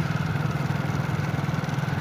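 Motorcycle engine running at a steady speed while riding, a low, even drone with fine rapid firing pulses.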